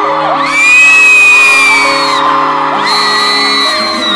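Live concert music with fans screaming loudly nearby: a long high scream starts about half a second in, the loudest moment, and another rises near the end.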